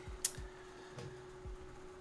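A single short click about a quarter second in, then quiet room tone with a faint steady hum and a few soft low knocks.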